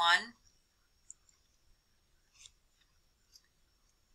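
The tail of a spoken word, then near silence broken by three faint, short clicks spaced about a second apart.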